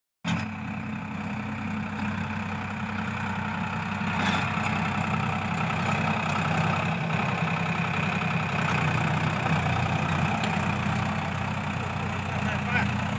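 Diesel farm tractor engine running steadily under load as it pulls a tine cultivator through the soil, ploughing the field.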